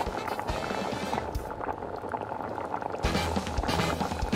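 Background music over a pot of ramen broth bubbling at a boil, with steady low tones coming in about three seconds in.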